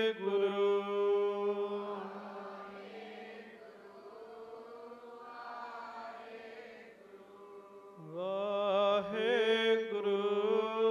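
A man chanting Sikh devotional verse in long, held notes. The voice sinks to a quieter stretch in the middle and comes back strongly about eight seconds in.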